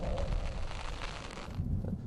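Rushing wind and road noise over a low rumble from a car on the move; the hiss thins out about one and a half seconds in.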